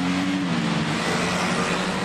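A car driving past close by on a street: steady engine and tyre noise, with the engine note dropping in pitch about half a second in as it goes by.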